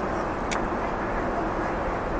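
Steady cabin noise of a Boeing 777-300ER airliner in flight, an even hiss and rumble of airflow and engines, with a faint click about half a second in.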